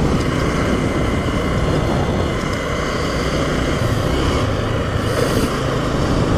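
Motorcycle engine running steadily at cruising speed, under a dense rush of wind and road noise on the camera microphone.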